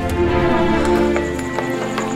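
Background drama music with sustained, held notes, over a few light taps.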